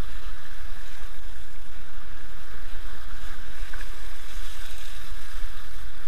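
Wind blowing hard over the microphone as a steady low rumble, with water hissing along a windsurf board under sail.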